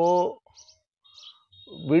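A man speaking in Hindi pauses for about a second, and faint short bird chirps are heard in the gap before he speaks again.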